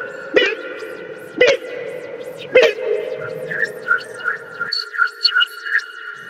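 Synthesized sci-fi machine sound effects: a steady electronic hum with rapid computer-like beeps and a sharp sweeping zap about once a second over the first three seconds. The low part of the hum cuts out near the end while the beeps go on. The effects stand for a human-to-robot transformation machine at work.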